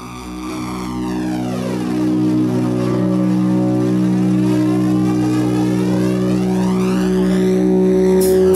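A sustained low synthesizer chord swelling in from silence, with a slow jet-like flanger sweep running through it that falls over the first few seconds and rises again near the end: the opening intro of a progressive metal set.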